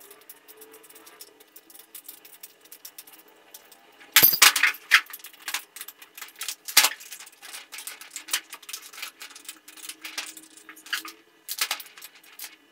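Small metal parts and a hand tool clinking and knocking against a cast-metal chainsaw-converter bracket as it is fitted and screwed onto an angle grinder. Irregular light clicks throughout, with a burst of louder clanks about four seconds in and another sharp clank near seven seconds.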